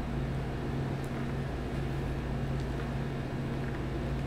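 Steady low hum with a faint hiss: the room tone of an indoor hall, with no music playing.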